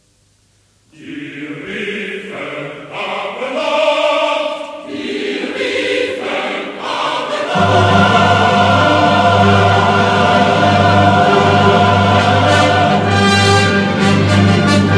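Mixed choir singing with a symphony orchestra in a classical cantata. After a brief silence the music enters about a second in, and about halfway through a sustained low bass comes in as the full ensemble grows louder.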